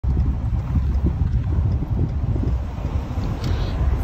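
Wind buffeting the microphone from a moving car, an irregular low rumble with road noise underneath.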